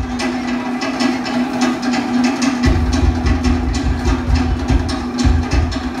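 Polynesian-style dance music with fast, even wooden drum strikes over a steady held low note; a deep bass drum comes in about two and a half seconds in.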